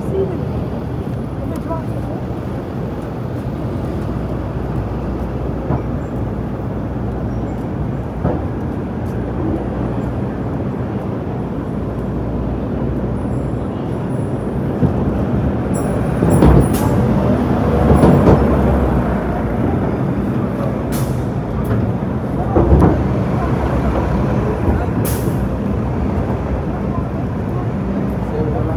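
Busy city street: a steady rumble of traffic with pedestrians' voices. It grows louder a little past the middle as a city bus goes by, with brief hisses and clicks.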